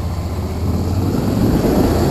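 Motorcycle engine pulling away and picking up speed. About a second in, its low steady pulse gives way to rising wind rush on the helmet-mounted microphone.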